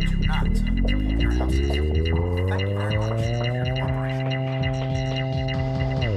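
Deep synthesizer drone played loud over a hall PA, a stack of tones that glides steadily upward in pitch for about three seconds and then holds level.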